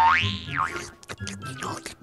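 A cartoon 'boing' sound effect whose pitch rises and then falls over about half a second, followed by light background music with short clicks.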